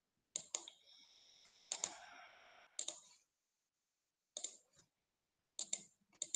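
Computer mouse clicking: five quick pairs of clicks spread over a few seconds, with a faint steady hiss and high tone for about two seconds near the start.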